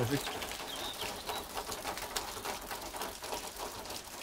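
Heavy rain falling steadily, a dense patter of drops splashing and bouncing off hard surfaces.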